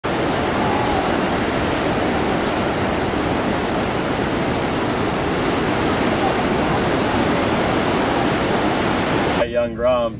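Breaking ocean surf: a steady, dense rush of whitewater that cuts off suddenly near the end.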